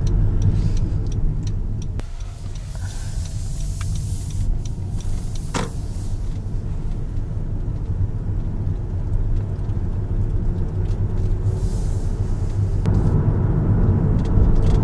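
Honda Odyssey Hybrid minivan driving, heard from inside the cabin: a steady low road and tyre rumble, with one brief sharp sound about halfway.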